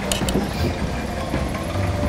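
Steady low engine rumble, with a few faint crinkles of a plastic bag being handled in the first half-second.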